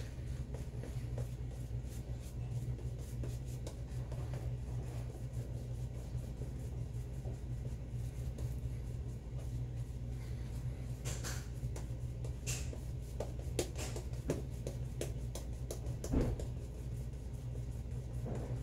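Shaving brush worked over a face already covered in shaving cream: soft, repeated scratchy brushing of bristles on lathered skin, with a few sharper strokes in the second half, over a steady low hum.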